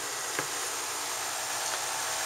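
Steady, even hiss of an air-conditioning unit running with cicadas droning, with one faint tap less than half a second in.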